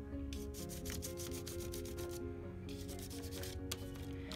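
Chalk pastel stick scratching across paper in runs of quick repeated strokes, laying in a light base layer of colour. Soft background music with held notes plays underneath.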